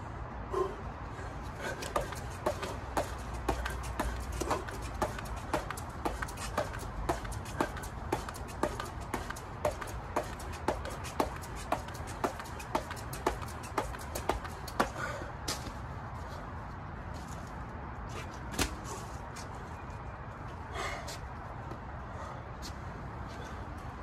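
A heavy 5-pound jump rope turning, each rotation giving a sharp slap as the rope and the jumper's feet strike the rubber mat, about twice a second; it stops about 15 seconds in, followed by a few scattered knocks.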